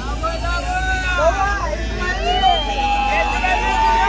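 Several voices calling out and singing at once in overlapping gliding pitches, with one long held note from about halfway through, over a steady low hum.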